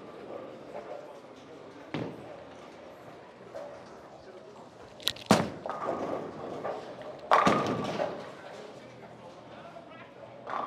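A Hammer Scorpion Sting bowling ball lands on the lane with a sharp knock about five seconds in. About two seconds later it crashes into the pins, the loudest sound, ringing off over about a second in a large hall. A smaller thud comes about two seconds in.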